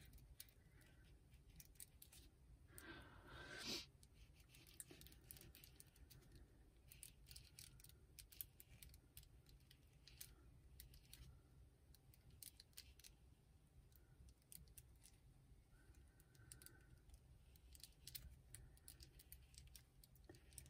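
Faint, irregular scratching and ticking of a pen-style craft knife blade cutting through paper and cardstock on a cutting mat, with one louder rasping sound about three seconds in.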